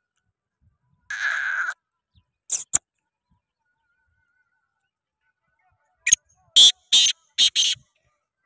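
Male black francolin calling: a raspy note about a second in, two short sharp notes at about two and a half seconds, then five loud harsh notes in quick succession near the end.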